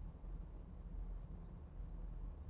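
Faint strokes of a marker writing on a glass lightboard, over a low steady room hum.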